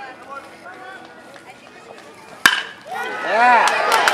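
A metal baseball bat hits a pitched ball about two and a half seconds in: one sharp crack with a short ringing ping. Spectators break into loud shouting straight after the hit.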